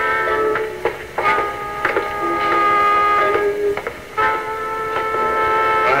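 Soap-opera background music: sustained held chords that shift to new chords about half a second, one second and four seconds in.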